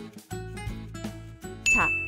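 Light background music with a steady beat, then near the end a single bright ding chime, the loudest sound here, ringing briefly.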